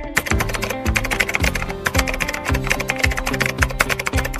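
Background music with a steady beat of about two low thumps a second, overlaid from the very start by a rapid keyboard-typing sound effect, a fast run of sharp key clicks.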